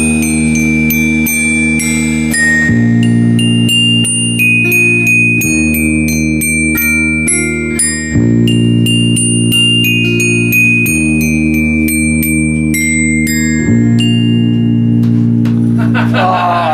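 Toy glockenspiel with metal bars struck with a mallet, playing a melody of single ringing notes, a few per second. Underneath run low held chords that change every two to three seconds.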